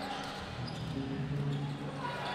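Basketball being dribbled on a hardwood court, over steady arena crowd noise.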